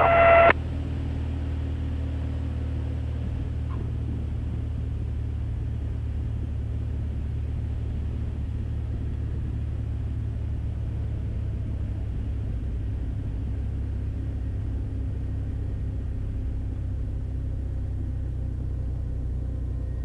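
Mooney M20E's four-cylinder Lycoming engine running steadily at low power, a constant low drone heard inside the cockpit.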